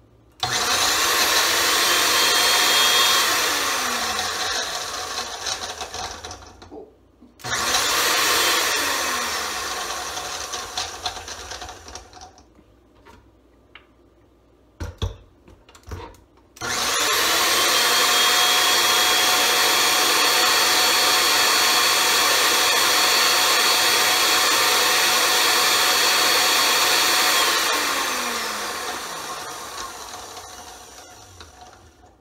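Countertop blender grinding chunks of pancake and raw carrot in three runs: about six seconds, about five seconds, then about eleven seconds. At the end of each run the motor's whine falls in pitch as it spins down after being switched off. In the pause before the last run there are two brief thumps.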